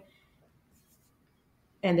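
Near silence: a quiet pause in a woman's lecturing speech. Her voice resumes near the end.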